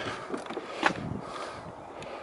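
Car door being opened: one sharp latch click about a second in, over faint outdoor background noise.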